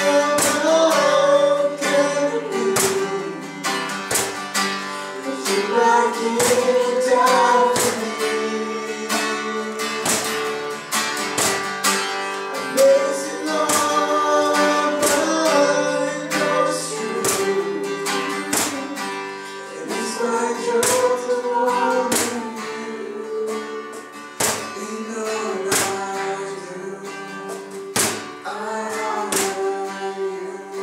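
Live worship song: an acoustic guitar strummed in a steady rhythm, with women's voices singing the melody into microphones.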